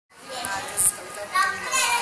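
A crowd of young children chattering and calling out in high voices.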